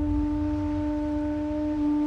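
Conch shell trumpet blown in one long, steady note, with a low rumble underneath.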